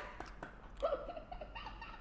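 A man's faint, high-pitched closed-mouth whimper of disgust about a second in, with a few small clicks around it.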